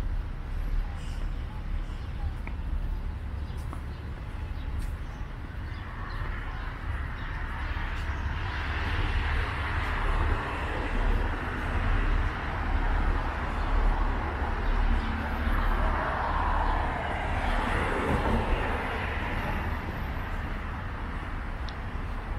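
Outdoor street ambience beside a road: a steady low rumble with traffic noise that swells for several seconds in the middle and then fades, and the voices of passers-by.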